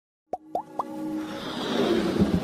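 Three quick pops, each rising in pitch and about a quarter second apart, starting about a third of a second in, then a swelling whoosh that builds to the end: sound effects of an animated logo intro.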